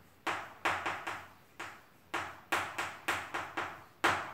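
Chalk writing on a chalkboard: a quick, irregular run of about ten sharp taps and short scrapes as characters are written.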